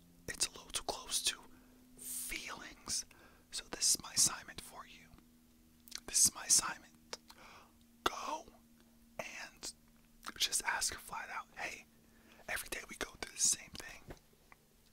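A man whispering in short phrases with brief pauses between them.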